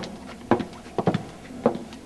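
A run of footsteps, about two a second.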